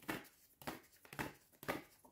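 A deck of paper cards being shuffled by hand: short papery rustles, about one every half second.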